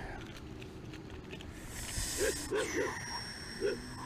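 Plastic clicking and rustling as a crankbait in its plastic blister package is handled over an open plastic tackle box, with a brief crinkling rush about halfway through. A few short faint calls sound in the second half.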